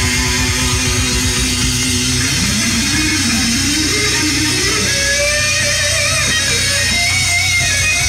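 Rock band playing live, with an electric guitar lead on top: a held note, then about two seconds in, notes that bend upward and waver with vibrato, climbing higher.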